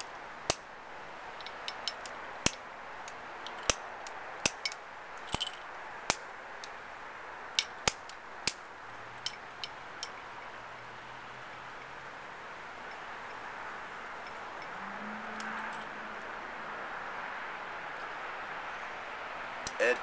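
Sharp, irregular clicks and clinks, a dozen or more in the first half, as small hard objects are tapped against a hand-held ashtray while cigar shavings are gathered; after that only a steady outdoor hiss with a faint low hum.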